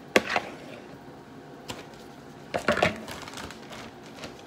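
A fork knocking and clicking against a plastic mixing bowl as seasoned chicken pieces are moved in it: a few separate knocks, one just after the start, one near the middle and a quick cluster about two-thirds through.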